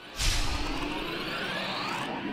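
Logo-intro whoosh sound effect: a sudden swish that starts just after the beginning and sweeps upward in pitch as it goes on.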